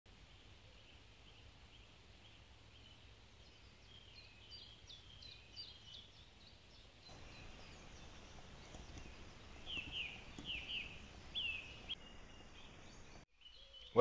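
Faint outdoor background with birds chirping: a run of short high calls a few seconds in, then louder, falling chirps in small groups later on.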